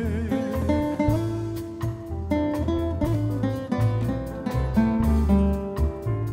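Instrumental break in live band music: an acoustic guitar plays a melodic run of plucked notes over a double bass's low notes. A singer's held note with vibrato dies away just at the start.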